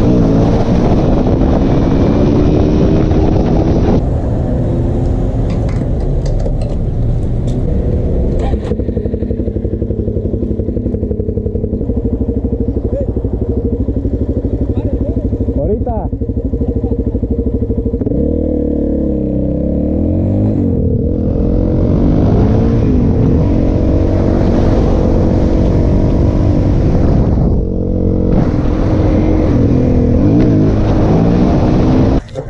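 Dual-sport motorcycle engine running while riding, heard from the rider's helmet, its pitch rising and falling with the throttle. It revs up more strongly a little past halfway, then dips briefly near the end.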